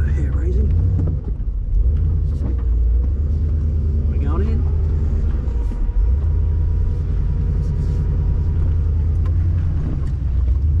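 Nissan Patrol 4WD's engine running at low revs, a steady deep rumble, with a couple of brief rising higher sounds over it, about half a second in and about four seconds in.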